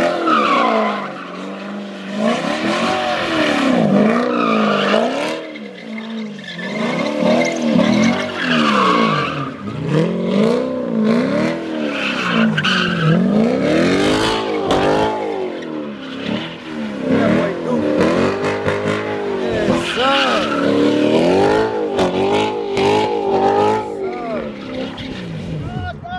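C7 Corvette's V8 revving up and down over and over during donuts, its pitch rising and falling about once a second, with the rear tyres spinning and squealing on the concrete.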